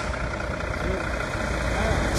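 Heavy truck diesel engines running close by, a steady low rumble, with faint voices over it.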